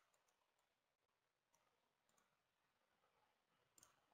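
Near silence, with a few very faint clicks just after the start and again near the end.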